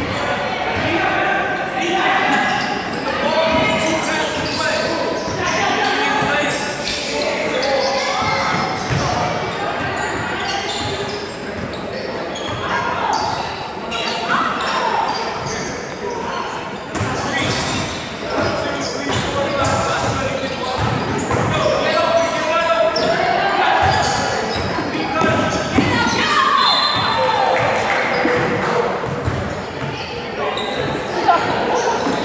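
Basketballs bouncing on a hardwood gym floor, mixed with the overlapping chatter and shouts of players and onlookers, echoing in a large gym.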